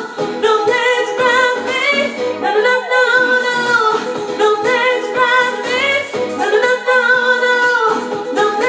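A woman singing into a microphone, holding long notes that waver and slide in pitch, over a musical backing.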